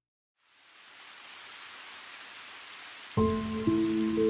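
Steady hiss of rain fading in from silence about half a second in. About three seconds in, music starts suddenly with several held notes over the rain, louder than the rain.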